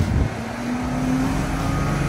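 Three 1.5-litre sedans in a drag race, a turbocharged Proton S70 with a dual-clutch gearbox and a naturally aspirated Honda City and Toyota Vios with CVTs, accelerating hard away from the start line. Their engines hold fairly steady notes over the rushing noise.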